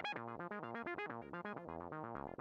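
Synthesizer arpeggio from Cubase's built-in Prologue synth playing back: a rapid, even run of short, bright notes that jump between pitches of a repeating pattern generated by the built-in arpeggiator.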